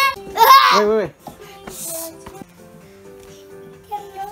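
A loud, high-pitched squealing voice for about a second, then soft background music with long held notes.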